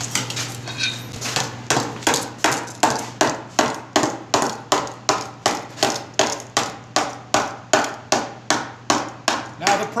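Hand hammer striking a hot 18-gauge brass disc held over a steel ball stake, raising it into a dome. A few lighter taps come first, then steady ringing blows at nearly three a second, over a steady low hum.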